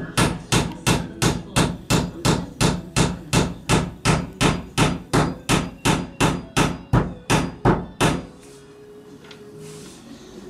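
Hammer striking a wooden roof beam in a steady rhythm of about three blows a second, over twenty blows, which stop about eight seconds in.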